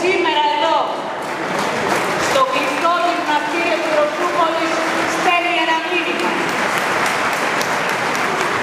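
An audience applauding while a woman keeps speaking into the podium microphones over the clapping.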